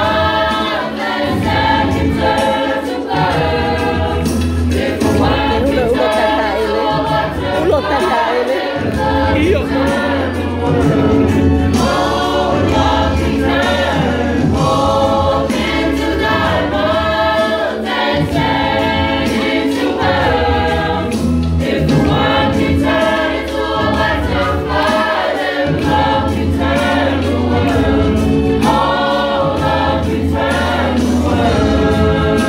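Mixed youth choir singing a hymn together, loud and steady.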